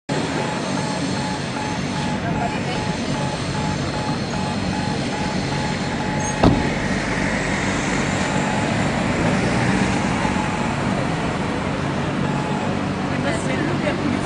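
City street traffic noise with cars driving past and voices in the background. There is a faint, evenly pulsing beep, and one sharp thump about halfway through.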